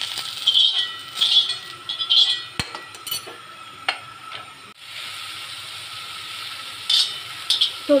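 Steel spoon scraping and stirring green chillies roasting in hot oil in an iron kadhai, with a sharp clink about two and a half seconds in. After a cut near the middle, oil sizzles steadily in the pan, with a couple of short scrapes near the end.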